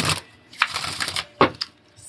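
A deck of reading cards being shuffled by hand: a quick rattle of riffling cards lasting under a second, then a couple of single taps.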